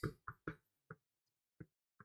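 A few faint, irregular light knocks or taps, about five in two seconds, the first the strongest.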